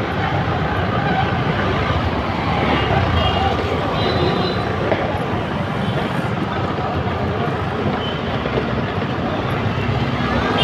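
Steady noise of dense street traffic, with motorbikes and other vehicles passing close by. A few faint, brief high tones come about three to four seconds in.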